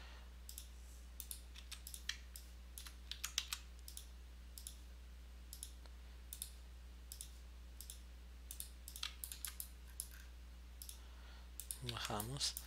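Irregular clicks of a computer mouse, some in quick pairs, over a steady low electrical hum.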